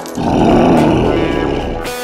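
A roar sound effect dubbed for a Hulk action figure, starting a moment in and fading away over about a second and a half, over background music.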